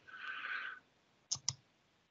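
A soft breath into a headset microphone, then two quick computer mouse clicks about a fifth of a second apart, a little over a second in.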